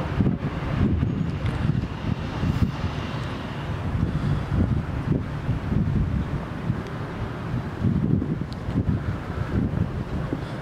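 Wind buffeting the camera microphone in irregular gusts, a loud low rumble that rises and falls throughout.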